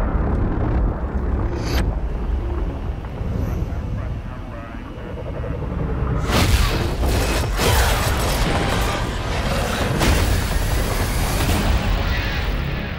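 Dramatic film music layered with deep booms and explosion effects. A sharp hit comes about two seconds in, there is a quieter stretch a few seconds later, and a run of loud booms follows from about halfway through.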